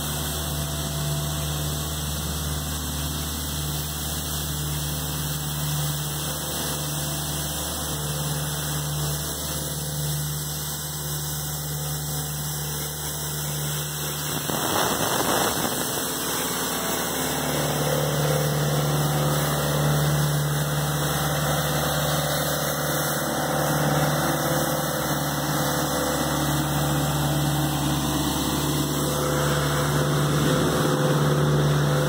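Elgin Pelican mechanical street sweeper's engine running with a steady hum as the machine draws near, with a brief rush of noise about halfway through as it passes close by, then running louder.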